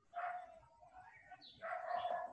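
A dog barking faintly in the background, twice, the second call about a second and a half after the first.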